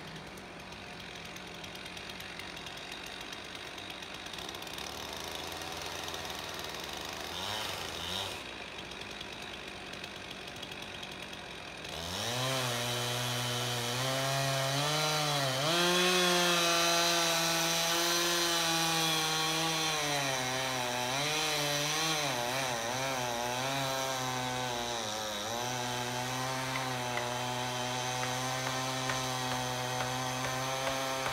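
Chainsaw cutting into the base of a cedar trunk being felled. It is quieter for the first twelve seconds or so, then opens up to full throttle, its pitch sagging and recovering as the chain bites into the wood.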